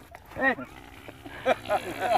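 A man's short excited shouts: one "eh!" about half a second in, then a few brief whoops near the end.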